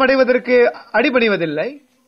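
Only speech: a man preaching, his voice stopping shortly before the end.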